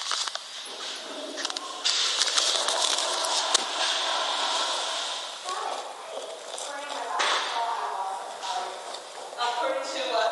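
A recording made in a public restroom, played back on a handheld digital voice recorder: indistinct voices in the background over a rushing hiss that grows stronger about two seconds in.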